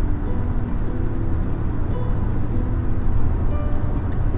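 Steady road and tyre noise heard inside a moving car's cabin at highway speed, with faint background music over it.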